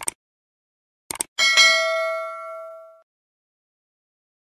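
Subscribe-button sound effect: a short click, a few quick clicks about a second later, then a bell ding that rings out and fades over about a second and a half.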